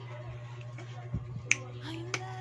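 A soft knock, then a single sharp plastic click about a second and a half in as the cap of a small plastic bottle is worked open. A steady low hum runs underneath.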